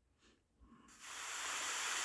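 Near silence, then about a second in a steady hiss of background noise starts as a paused screen-recorded video resumes playing.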